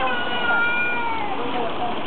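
A toddler's drawn-out, high-pitched squeal of about a second, over the steady splashing of a plaza fountain.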